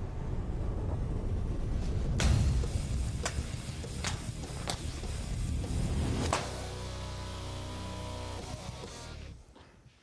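A machete slashes through hanging filled fabric bags in five sharp cuts spread over about four seconds, over dramatic background music. After the last cut the music holds a sustained chord, then fades near the end.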